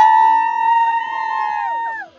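A long, high vocal note held for nearly two seconds over music, sliding up at the start and falling away near the end, with a second voice joining about half a second in.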